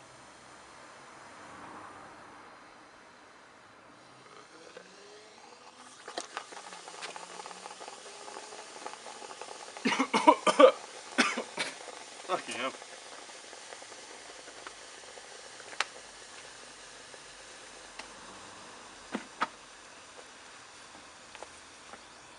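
Caustic soda solution reacting with an aluminium seat post inside a steel seat tube, fizzing and hissing steadily as hydrogen comes off. The hiss grows louder about six seconds in. A person coughs several times about ten to twelve seconds in, and there are a few sharp clicks near the end.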